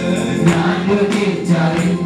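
Several men singing a Malayalam Christian worship song together through microphones, with electronic keyboard accompaniment and a steady percussion beat.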